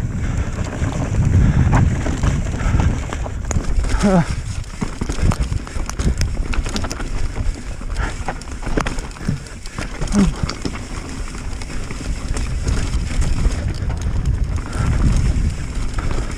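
Whyte T-130C RS mountain bike descending a dirt trail at speed: a steady low rumble of knobbly tyres on dirt and wind, broken by frequent rattling clicks from the bike over bumps. The rider gives short grunts about four seconds in and again about ten seconds in.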